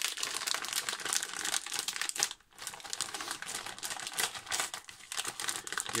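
A metallised crisp packet of jalapeño grills crinkling continuously as it is pulled open and handled, with a brief pause about two and a half seconds in.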